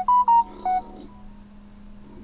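Short electronic notification chime: a few quick pure notes stepping up and then back down, over within the first second, above a steady low electrical hum.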